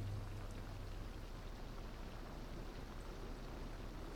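Faint, steady hiss of background noise (room tone), with no distinct event; a low hum dims at the start.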